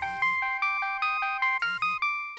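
Mobile phone ringtone for an incoming call: a quick tune of short, bright electronic notes, about five a second.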